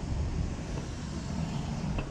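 Steady outdoor background noise: distant street traffic mixed with wind rumbling on the microphone.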